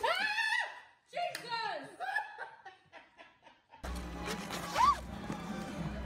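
A woman shrieking and laughing in surprise as a pop-up gift box springs open; about four seconds in, a noisy crowd with music and a rising cry.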